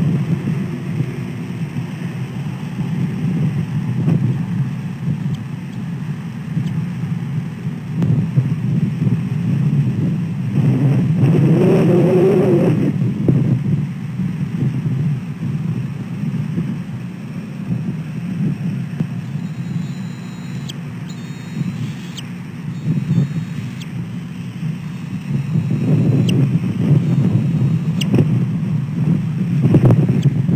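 Steady low rumble of wind buffeting an outdoor camera microphone, mixed with road traffic, swelling louder about eleven seconds in and again near the end.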